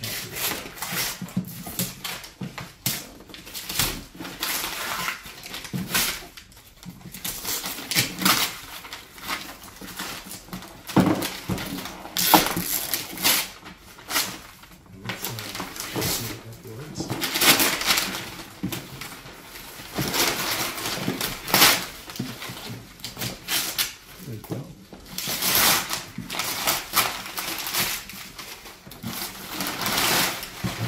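Gift-wrapping paper being torn and crumpled off a large cardboard box, in irregular rustling and ripping bursts.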